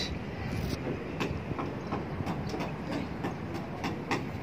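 Building-site background noise: a steady rumble with scattered faint knocks.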